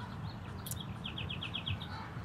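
A small bird calling: one short sharp note, then a quick run of about seven high chirps lasting under a second, over a steady low background rumble.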